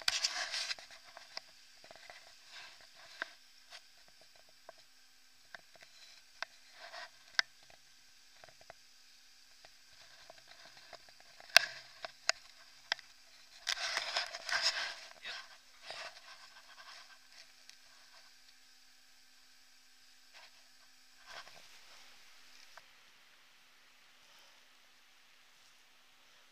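Handling noise of an action camera in a waterproof case being carried on foot: scattered faint knocks and clicks, with a louder rustle about 14 seconds in. A faint steady hum runs underneath and stops a few seconds before the end.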